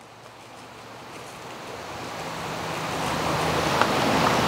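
A rushing noise that grows gradually louder, with a faint low hum joining about halfway through.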